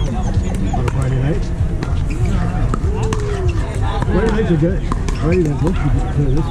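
Pickleball paddles striking the plastic ball, sharp pops at irregular intervals from the games across the courts. Players' voices call out among them over a heavy low rumble of wind on the microphone.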